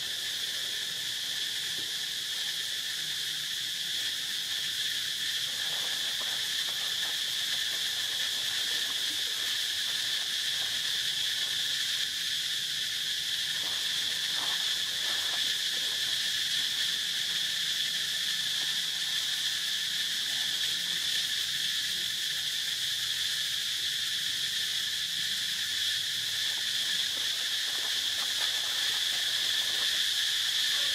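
A steady, high-pitched insect chorus, one unbroken buzzing drone.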